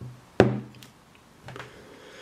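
A glass sauce bottle set down on a wooden desk: a single sharp knock about half a second in, then a few faint small taps.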